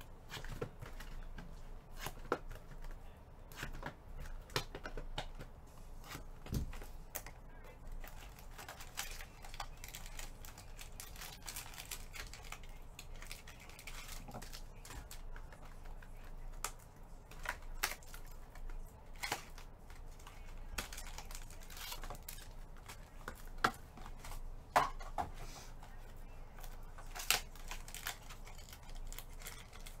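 Irregular clicks, taps and crinkles of shrink-wrapped trading-card boxes being handled and set down, with scattered sharper clicks.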